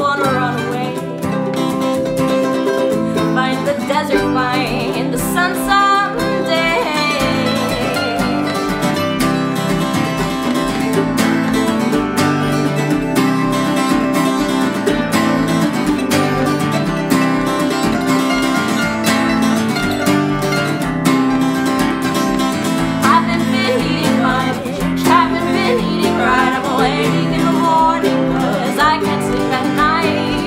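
Acoustic guitar and mandolin playing together, strummed and picked folk music in an instrumental passage.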